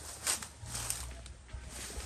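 Grass and brush rustling in a few short swishes over a low background rumble.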